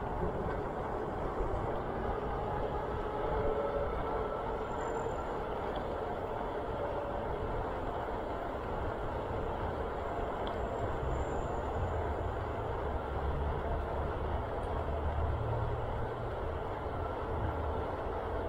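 Steady rush of wind over the microphone of a moving bicycle, with its tyres rolling on an asphalt path and uneven low buffeting throughout.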